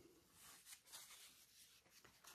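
Near silence, with a few faint, brief rustles of fabric being handled.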